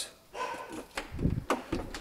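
A dog making brief, soft sounds, followed by two sharp clicks about three-quarters of the way through.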